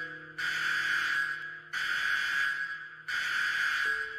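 A harsh buzzing sound effect, repeating about every second and a half with short gaps, over soft background music with held notes.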